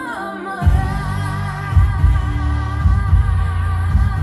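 A song with a singer holding one long, wavering note over a pulsing bass beat. The bass drops out for the first half second, then comes back in.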